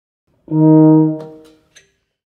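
Euphonium playing one held note, sounded as a starting pitch. It comes in about half a second in, holds for under a second, and fades away.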